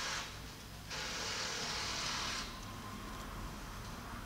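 Fingers working through thick, coiled afro hair, rustling it as sections are stretched and released for detangling: two long hissing rustles, the second ending about two and a half seconds in.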